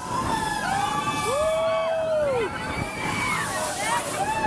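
Fairground ride sound system playing a repeated wailing call that rises, holds for about a second and falls away, like a drawn-out "whoa", about every two and a half seconds, over a steady noisy rush of the spinning ride.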